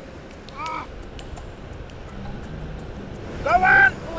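A crow cawing twice: a short caw about half a second in and a louder, longer one near the end.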